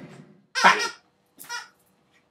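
Background music dies away at the start, then two short squeaky vocal noises about a second apart, the first the louder.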